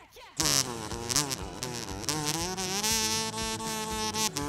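Kazoo playing the song's vocal melody, coming in loud about half a second in with a buzzy tone that bends and slides between notes, over a backing track with a steady beat.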